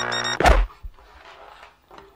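Music with a held drone breaks off about half a second in with one loud thunk, followed by a smaller knock.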